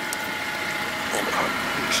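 Acura TSX engine idling steadily, heard from the open driver's door by the dashboard.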